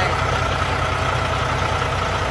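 Heavy truck's engine idling steadily: a constant low rumble with a thin steady whine over it.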